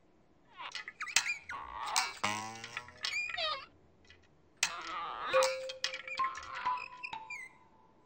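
High, squeaky cartoon character vocal sounds with gliding pitch and musical sound effects, including a few held notes in the second half. They come in two spells with a short quiet gap about halfway.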